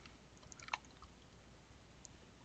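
A few faint, sharp clicks of a computer keyboard being typed on, the loudest about three-quarters of a second in.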